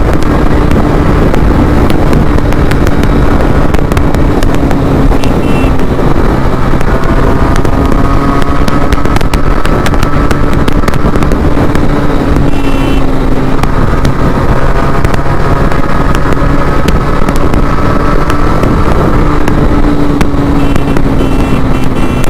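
Motorcycle engine running at steady cruising speed, heard from the rider's seat with wind rush on the microphone. The engine note holds nearly steady and eases slightly lower towards the end.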